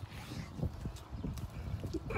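Crab meat being chewed, with a few soft clicks, over a low, uneven rumble of wind buffeting the microphone.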